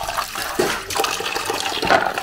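Water splashing and dripping in a metal basin as a hand stirs and scoops in-shell peanuts, with many short clicks of the wet shells knocking together.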